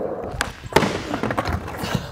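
Skateboard rolling on a wooden ramp, then a sharp slap about three-quarters of a second in as the board and skater hit the ramp in a fall, followed by rattling noise.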